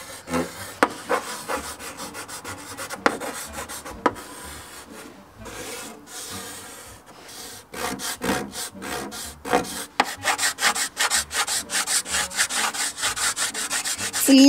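Chalk scraping on a chalkboard as a picture is drawn: slower scratchy strokes at first, then a fast run of short back-and-forth strokes from about eight seconds in, as lines are hatched in.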